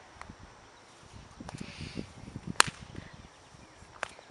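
A single sharp whip crack about two and a half seconds in, after a faint rustle of the whip being swung.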